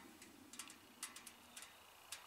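A handful of faint light clicks from handling the fuel bottle, over near silence.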